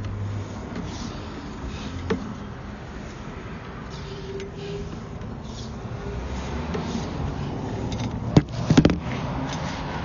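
Handling noise as a sewer inspection camera's push cable is fed down the line: a steady low rumble with a knock about two seconds in and a quick cluster of louder knocks near the end.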